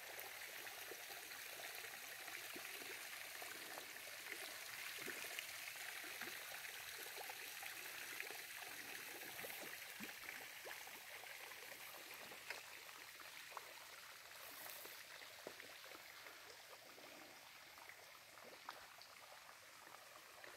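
Light rain falling: a faint, steady hiss with scattered small drip ticks, easing off slightly near the end.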